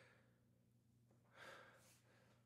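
Near silence, with one faint breathy exhale from a man, like a sigh, about one and a half seconds in.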